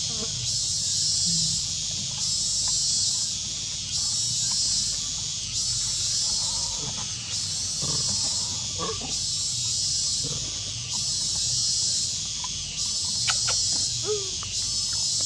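High-pitched insect chorus, cicada-like, swelling and fading about once a second, with a few faint short squeaks from the monkeys near the middle.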